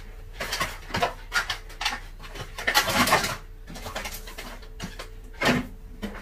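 Scattered knocks and clicks, with a louder stretch of rustling packaging about three seconds in, as groceries are put away into a fridge.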